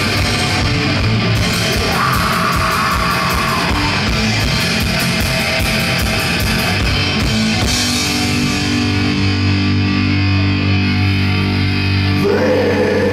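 Black-thrash metal band playing live: distorted electric guitars and bass over fast drumming with rapid cymbal hits. About eight seconds in the drumming stops, leaving the guitars and bass ringing on a held chord.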